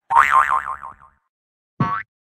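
Cartoon 'boing' sound effects for an animated logo: a springy boing that wobbles up and down in pitch, starting just after the start and dying away within about a second, then a short rising boing near the end.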